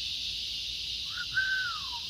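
Chorus of cicadas droning steadily at a high pitch. About a second in, a single clear note holds and then slides down.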